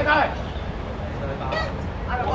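Short shouted calls, one right at the start and another about a second and a half in, over steady low background noise.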